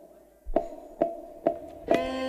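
Four sharp percussive clicks, evenly spaced about half a second apart: a count-in for the band.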